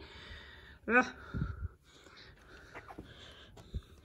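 A short grunt, then faint rustling and a few soft thumps as a silk-and-wool scarf is handled and searched through for its label.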